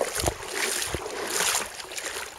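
Water splashing and sloshing from a swimmer's arm strokes at the surface, with a couple of sharper splashes early on and a longer wash of sloshing through the middle.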